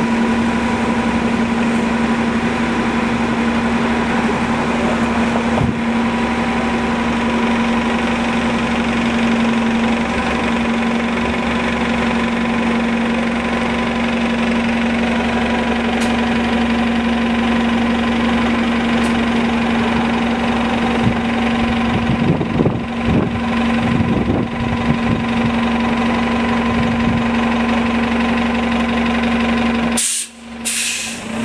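Cummins ISL-G natural-gas engine of a New Flyer XN40 Xcelsior CNG city bus idling at a stop, a steady hum with no change in pitch. Some uneven rumbling comes in about three-quarters of the way through.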